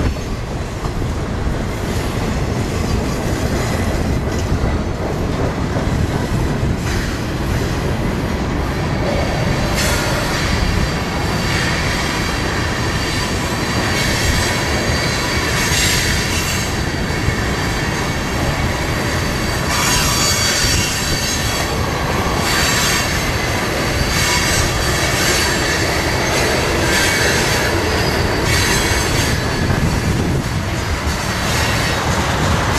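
Freight train of tank cars and covered hoppers rolling past on a curve: a steady rumble of wheels on rail with high-pitched wheel squeal that comes and goes, strongest about a third of the way in and through the later part.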